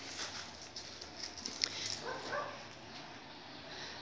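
A dog barking faintly, with one short call about two seconds in, over low background hum. A single sharp click comes just before it.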